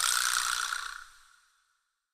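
A short edited-in sound effect: a sudden bright hit with a ringing tone that fades away within about a second, then dead silence.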